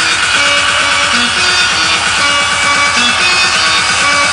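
Loud electronic dance music from a DJ set: a steady kick-drum beat drops in right at the start, under a repeating melodic riff.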